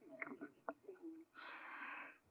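Faint laughter after a joke: a few short chuckles, then a breathy, wheezy laughing exhale near the microphone for the last half second or so.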